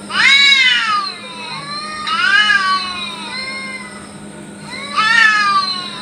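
Two cats caterwauling at each other in a territorial standoff: three long, wavering yowls that rise and then fall, at the start, about two seconds in and about five seconds in, with short pauses between.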